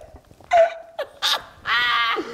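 People laughing hard in short bursts, ending in a high, squealing cackle near the end.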